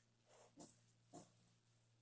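Near silence: faint room hum with a few soft, brief sounds in the first second and a half.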